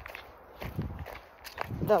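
Footsteps of a person walking on a paved woodland trail, a few soft, uneven thuds picked up by a hand-held phone.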